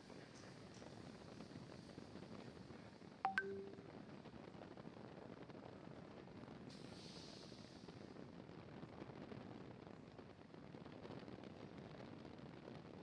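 Near silence: a faint steady hiss from a launch webcast's audio feed. About three seconds in, one short click and electronic beep. A brighter hiss rises briefly about seven seconds in.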